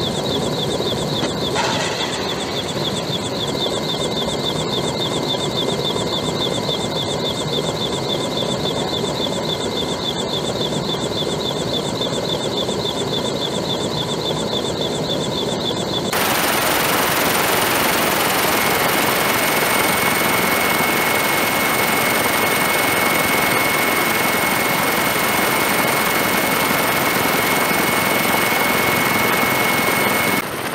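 Leonardo AW159 Wildcat HMA.2 helicopters flying by: rotor chop with a rapidly pulsing turbine whine. About halfway through, the sound switches abruptly to a steadier, rushing rotor and engine noise with a thin high whine.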